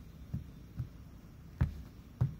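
Three soft, dull thumps of a tarot card deck being set down and tapped against a cloth-covered table while the decks are cut and restacked; the last one, near the end, is the loudest.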